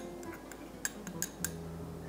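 A few faint, light glass clinks, mostly about a second in, as a small glass bowl of chopped parsley is tipped and tapped over a large glass mixing bowl of fried potatoes.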